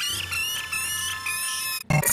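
Heavily distorted, pitch-shifted electronic audio: warbling high-pitched tones over a low steady drone, cutting off abruptly near the end.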